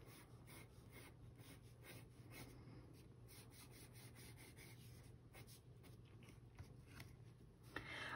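Very faint pencil sketching on drawing paper: a wooden graphite pencil drawn in light, loose strokes, barely pressed, heard as soft repeated scratches.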